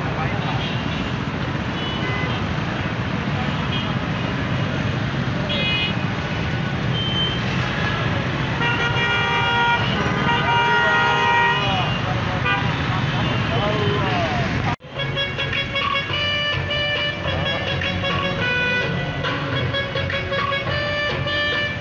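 Din of a jammed city street: vehicles idling and creeping, car horns honking and men's voices in the crowd. About three-quarters of the way through, the sound cuts out for an instant and comes back with music over the street noise.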